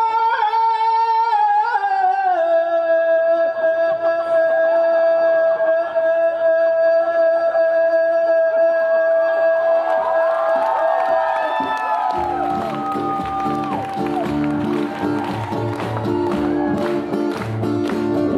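Live acoustic folk music: a singer holds one long steady note for several seconds, other voices slide in around it, and then about twelve seconds in acoustic guitars and hand drums come in underneath with a steady beat.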